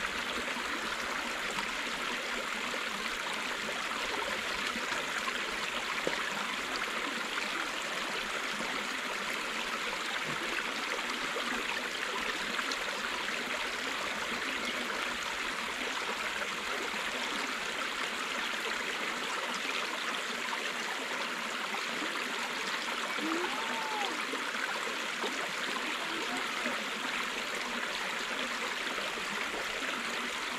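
Small, shallow woodland stream running over stones: a steady rushing trickle of water.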